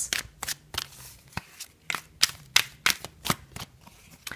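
A deck of tarot cards being shuffled by hand: a quick, irregular run of short card slaps and flicks, about three or four a second.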